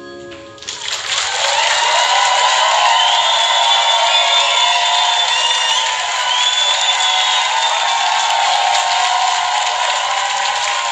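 The band's last held chord dies away, then under a second in an audience breaks into loud applause and cheering, with a few whistles through it.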